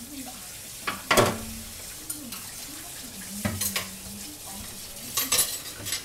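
Dishes and cutlery clattering while being washed in a sink, over a steady hiss. There are four bursts of clinking, the loudest about a second in, then others at about three and a half and five seconds.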